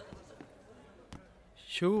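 A quiet room with a few faint, irregular knocks, then a man's voice starts near the end.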